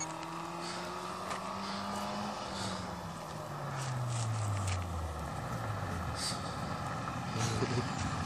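A car driving on a gravel road with a steady rush of tyres on gravel. Its engine note holds, then drops in pitch over a few seconds as it eases off.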